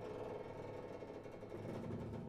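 String orchestra and grand piano playing a quiet tango passage, with sustained pitched tones under a fast, regularly pulsing figure.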